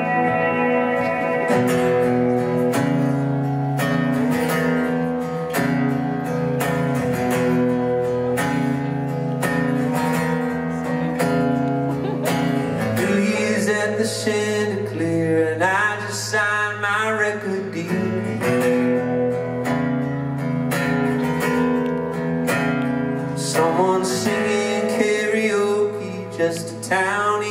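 Acoustic guitar strummed live in a slow, steady chord pattern, as a song's opening. A man's voice comes in singing over it about halfway through.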